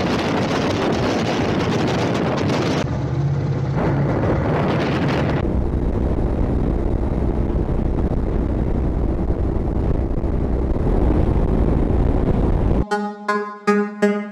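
Wind rush and road noise from a Honda X-ADV 750 scooter riding at speed, heard from its onboard camera, the sound shifting abruptly twice as the shots change. Music with a beat starts near the end.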